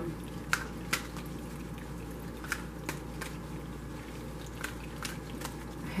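Faint, scattered clicks and taps of a deck of oracle cards being handled, about eight over a few seconds, over the steady hum of an air conditioner.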